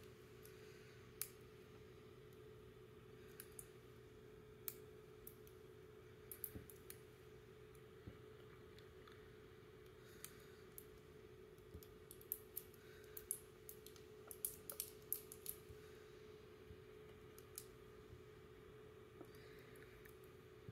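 Near silence: a faint steady hum with scattered small clicks, more frequent in the second half, from fingers handling a miniature plastic bottle held upside down over a tiny plastic cup.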